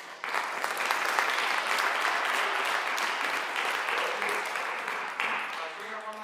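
Audience applauding, starting suddenly and dying away near the end.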